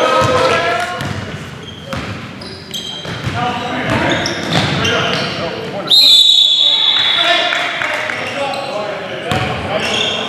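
Basketball game in a gym hall: players' voices and the ball bouncing on the hardwood floor. About six seconds in, a referee's whistle sounds one long, high blast, calling a foul.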